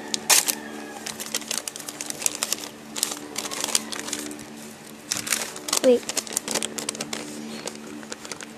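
Lined notebook paper and a clear plastic bag rustling and crinkling as hands unfold and handle them, a quick irregular run of crackles. A steady low hum sits underneath.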